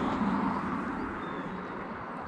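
Rumble of a passing motor vehicle, fading away over the two seconds.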